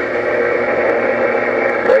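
President HR2510 radio's speaker carrying an open, keyed transmission with no words in it: a steady rushing noise with a faint hum while the other station holds his transmitter keyed during a power test. A voice comes through again right at the end.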